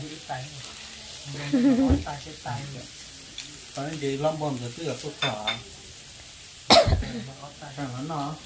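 Steady sizzling of a hot pot simmering on the table under short stretches of voices at a meal, with one sudden loud sound near the end.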